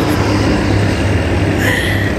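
A steady low rumble with a noisy haze over it, and a brief high tone near the end.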